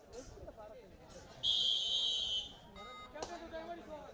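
A referee's whistle blown once, a single steady shrill blast about a second long in the middle, over the chatter of players and spectators. A brief, fainter second tone follows just after.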